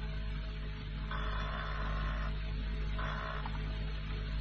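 Sound-effect electric doorbell ringing in buzzing bursts, one about a second long and then a shorter one near the end, over the hum and hiss of an old radio recording.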